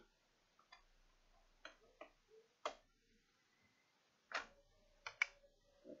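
Plastic retaining clips of an HP Pavilion G7 laptop's bottom cover snapping into place under hand pressure: a handful of short, sharp clicks spread over a few seconds, the loudest two near the end.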